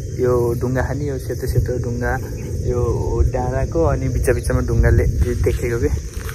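A steady, high-pitched insect drone runs under a man's talking voice, with low rumble from wind on the microphone.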